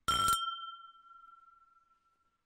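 Two glasses clinking in a toast: a short bright clatter, then one clear ringing note that fades away over about two seconds.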